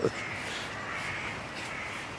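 A faint, harsh bird call lasting about a second, heard over outdoor background, just after the end of a person's laugh.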